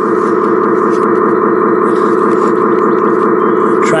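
Radio-controlled model A40G articulated haul truck running close to the microphone, a steady even hum.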